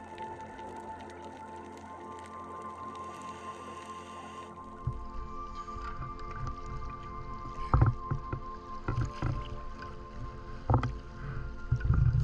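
Soft background music throughout. About four and a half seconds in, the sound of the sea at the surface joins it: water sloshing around the camera with a low rumble, and a few louder splashes.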